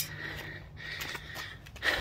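A single sharp knock as the hot ingot mold is bumped across the cement, then a faint steady hum.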